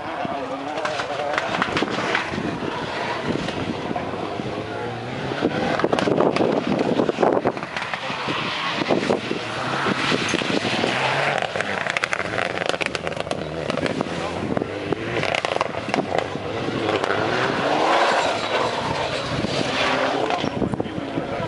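Rally car engine revving up and down hard as the car slides through a wet gravel turn, with spray and gravel noise under it.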